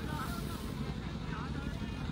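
Faint, distant voices of people talking at the ground over a steady low rumble.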